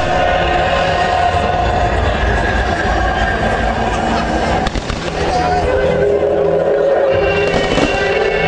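Music plays steadily over a fireworks display, with a few short firework bangs about halfway through and another faint one near the end.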